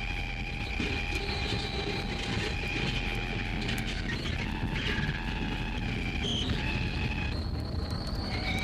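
Noise-drone music: a dense low rumble under several held, whining high tones, like a machine drone. The high tones change pitch about seven seconds in.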